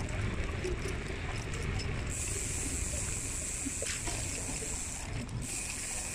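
Steady rumble of wheels rolling over pebble-textured paving, with a high, steady hiss that comes in about two seconds in and drops out briefly near the end.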